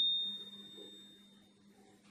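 A high, steady ringing tone that fades out over about a second and a half, over a low steady hum.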